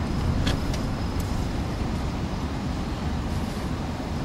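Car on the move: a steady low rumble of engine and road noise, with a few faint clicks in the first second or so.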